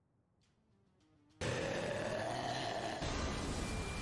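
Near silence, then about a second and a half in a sudden loud burst of dramatic anime soundtrack music and effects, the build-up to a titan's lightning transformation.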